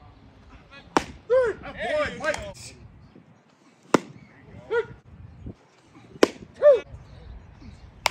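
Sharp smacks of pitched baseballs, about one every two to three seconds, each followed within a second by brief shouts from players.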